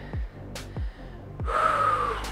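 A man's heavy, breathy gasp with a hoarse tone about one and a half seconds in, the breathing of someone winded from a set of curls, over background music with a steady beat.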